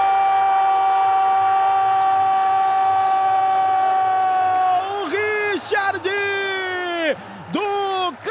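A Portuguese-speaking television commentator's goal call: a long "Goool!" shout held on one steady note for nearly five seconds, followed by more excited shouting that swoops up and down in pitch.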